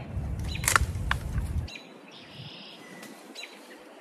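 Old rusty hand pruners snipping through thick Limelight hydrangea stems: a sharp snap about two-thirds of a second in, a smaller click just after, and a faint one near the end. Wind rumbles on the microphone for the first second and a half.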